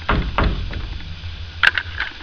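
A hand patting a wooden board twice, two dull thuds close together, followed by a sharp click near the end.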